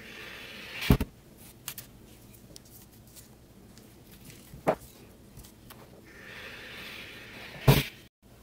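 Handling sounds at an ironing board while iron-on hem tape is applied: a clothes iron is set down with a sharp knock about a second in, and another knock follows near the middle. Near the end comes a longer rustling hiss as the hem tape is handled, ending in a loud knock.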